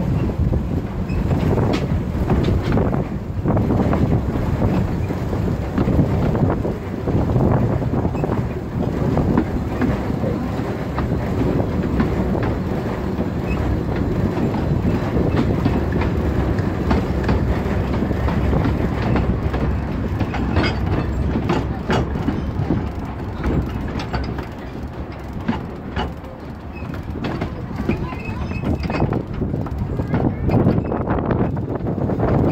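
Narrow-gauge steam train running, heard from an open carriage behind a Decauville 0-4-0 locomotive: a steady rumble of wheels on track with clicks from the rail joints. The clicks come sharper and more often in the last third as the train runs over points.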